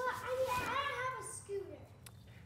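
A young child's high voice talking, quieter than the man's, fading out near the end.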